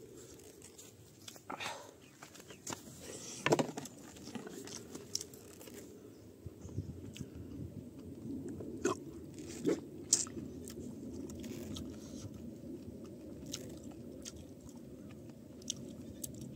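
Close-miked chewing and wet mouth sounds of a man eating rice and fish curry by hand, with many small clicks and crunches. Two louder clicks stand out, about three and a half seconds in and about ten seconds in.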